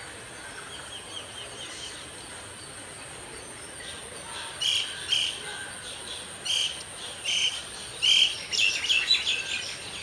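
Red-vented bulbul singing: a few faint notes at first, then loud short phrases about a second apart from about halfway, ending in a rapid run of notes near the end.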